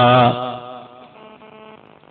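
A man's voice chanting Quranic recitation, holding the long drawn-out final vowel of a verse on one steady note that ends about a third of a second in, then fading into faint room echo.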